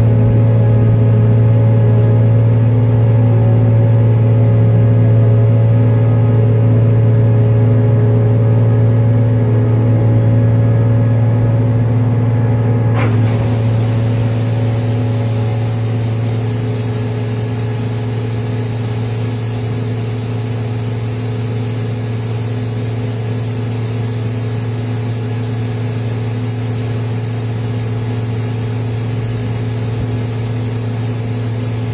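A combine harvester's engine running with a steady hum. About halfway through, a sharp click, and the unloading auger starts pouring wheat from its spout into a grain trailer, adding a steady high hiss of falling grain.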